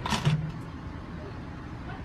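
Car engine idling steadily, heard from inside the car, with a brief burst of noise at the very start.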